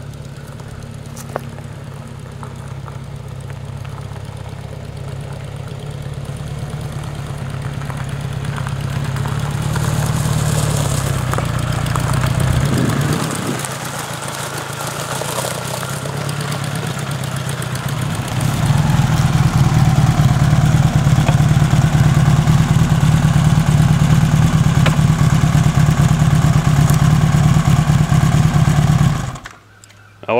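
Motorcycle engine, running on a reprogrammed C5 ignition with plugs re-gapped to .030, growing louder as the bike rides up, then running steadily close by for about ten seconds before it is switched off abruptly near the end.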